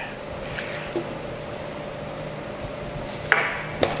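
Steady low room hum with a faint tick about a second in and a short burst of noise shortly before the end.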